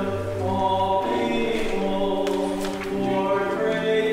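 A church choir chanting psalm verses, several voices holding long steady notes that move from pitch to pitch.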